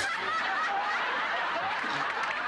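Studio audience laughing, a dense, steady wave of many voices laughing together.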